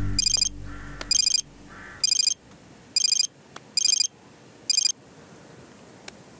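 Mobile phone ringtone: six short high-pitched electronic rings about a second apart, stopping about five seconds in when the call is answered.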